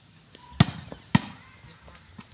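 Two sharp smacks about half a second apart: a volleyball being struck by players' hands and arms during a rally.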